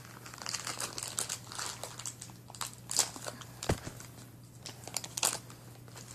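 Plastic packaging crinkling and rustling as it is handled, in irregular crackles with a few sharper clicks and one knock a little past the middle.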